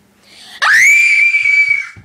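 A girl's high-pitched scream that starts about half a second in, swoops sharply up in pitch, holds one shrill note for over a second, then stops.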